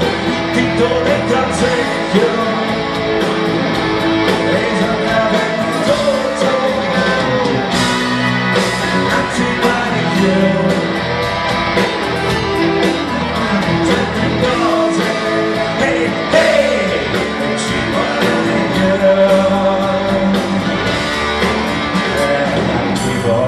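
Live rock band playing: drums, bass and electric guitars going steadily, with a wandering melody line over them.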